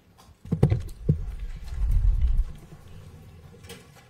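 Microphone handling noise: several low knocks between about half a second and a second in, then a low rumble around two seconds in, as microphones are grabbed and repositioned.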